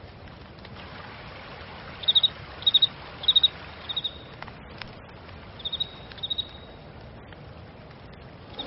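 Cricket-like chirping: short high trills of three or four quick pulses, repeating about every half second in two runs, over a steady low background noise.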